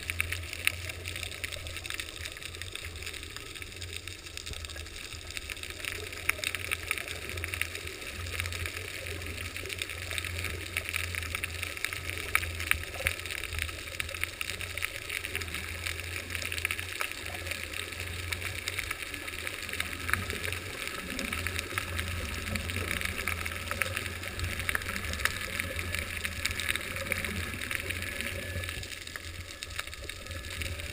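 Underwater ambience picked up by a camera in a waterproof housing: a steady hiss thick with fine crackling, over a constant low hum.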